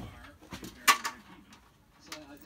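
Hands handling small metal fastening hardware at a vehicle's fender, with one short sharp click a little under a second in.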